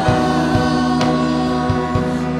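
Live Cebuano worship song: a woman and a man singing into microphones over band accompaniment with a steady drum beat about twice a second.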